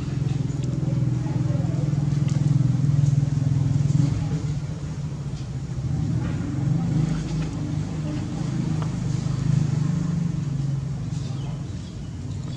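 A steady low engine hum, like a motor vehicle running nearby, a little louder between about two and four seconds in.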